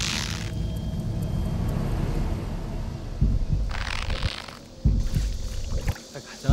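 A short whoosh as an arrow is loosed from a drawn bow, and a second whoosh about four seconds in, over a steady low rumble with a few dull thumps.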